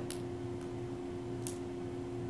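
Room tone: a steady low hum with two faint clicks about a second and a half apart.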